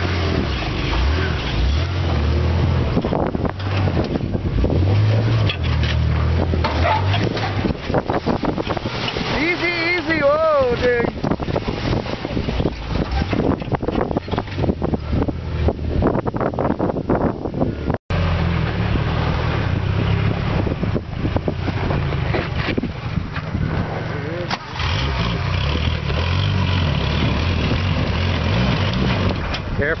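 Off-road 4x4 engine running and revving unevenly under load as a lifted rig crawls over rocks, with wind buffeting the microphone. The sound breaks off suddenly about eighteen seconds in and resumes with the same kind of engine rumble.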